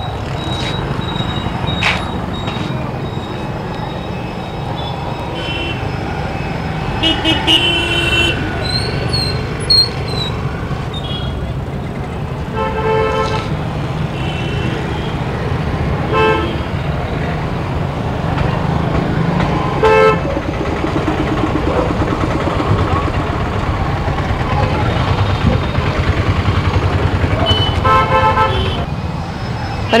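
Busy street traffic: a steady rumble of engines with short vehicle-horn toots every few seconds, a cluster of them through the middle and another near the end.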